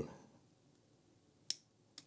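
A single sharp metal click with a brief high ring, about one and a half seconds in, from a small tweezer-cutter modelling tool being handled with plastic kit parts.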